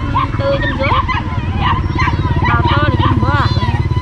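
Caged market animals giving a steady run of short, high, rising-and-falling cries, over a motorcycle engine idling close by.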